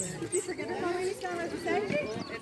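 Indistinct voices of people talking and calling in the background, wavering in pitch, with no clear words.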